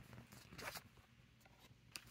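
Faint rustling and scraping of tarot cards being handled and slid into place on a quilted blanket, a few soft scrapes in the first second, then near silence.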